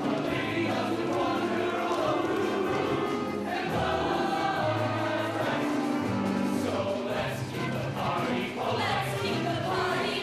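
A mixed show choir of male and female voices singing continuously.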